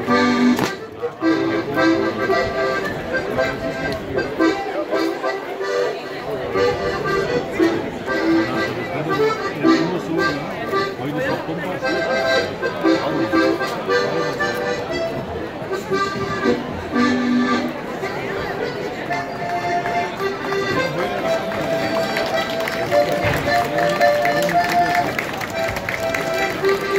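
Accordion-led Alpine folk dance tune playing continuously, with crowd voices mixed in.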